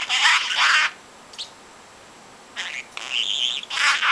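Young budgerigar singing its chattering warble: a burst of chirpy notes in the first second, a pause, then more warbling from about two and a half seconds in.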